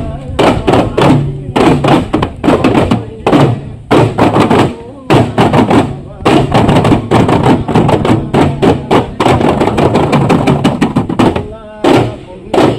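Daff frame drums beaten by hand by a group of players in quick, loud strikes, in runs broken by brief pauses, as in a Duff Muttu performance; voices carry along beneath the drumming.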